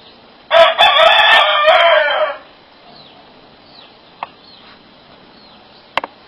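A rooster crowing once, loud, lasting about two seconds and starting about half a second in.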